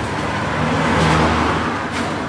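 Street traffic: a motor vehicle passing close by, its noise swelling to a peak about a second in and then fading.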